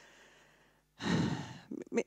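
A woman's audible breath picked up close on a headset microphone: a faint breath at first, then a loud sigh-like breath about a second in, lasting under a second.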